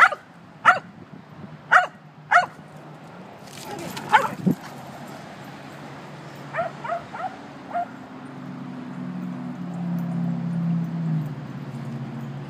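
German shepherd barking: four sharp barks in the first two and a half seconds, another about four seconds in, then a few fainter short yips around seven seconds. A low steady hum builds after about eight seconds.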